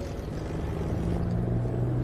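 Low, steady engine drone of motor traffic on a city street, with general street noise, slowly growing a little louder.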